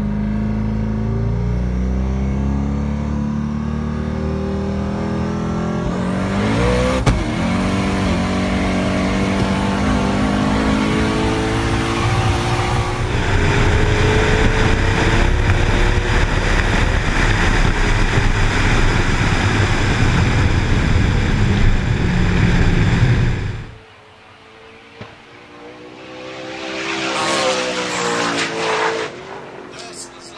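Twin-turbo Corvette V8 idling, then revving up about six seconds in as the car launches, and running at full throttle for about seventeen seconds. After a sudden cut, a distant car's engine swells and fades as it passes.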